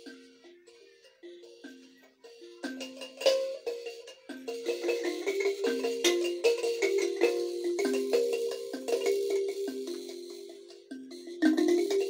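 Akogo (Ugandan thumb piano) played solo: a repeating pattern of short plucked metal-key notes. It is soft for the first couple of seconds, then louder and busier from about three seconds in.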